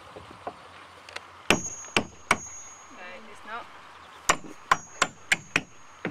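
Hammer blows on a steel nail being driven into a wooden raft deck, each with a short high metallic ring. There are three blows, a pause, then five quicker blows about three a second.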